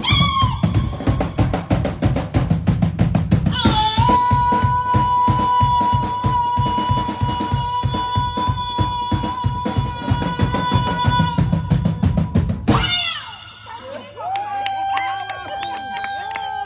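Live band music: a woman singing into a microphone over a drum kit playing a busy beat, with one long held note in the middle. The drums stop about thirteen seconds in, leaving her voice alone.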